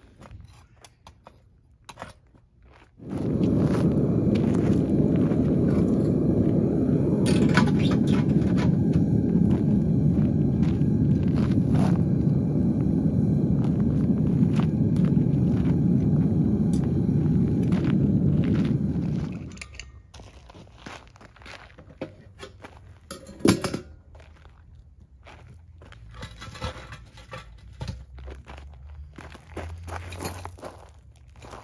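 Gas-fired melting furnace burner running with a loud, steady rush that starts suddenly a few seconds in and cuts off after about sixteen seconds. Before and after it, faint crunching steps on gravel.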